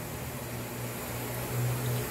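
Waterjet cutting head spraying a high-pressure jet of water into the open air: a steady hiss with a low hum underneath, swelling slightly near the end.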